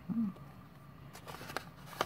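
Pages and flaps of a handmade paper journal being turned by hand: a few faint paper taps and rustles a little after a second in and again near the end.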